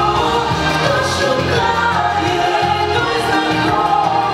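Pop song with several voices singing together over a bass line that steps from note to note.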